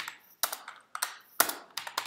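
Typing on a computer keyboard: a few irregular, separate key clicks with short pauses between them.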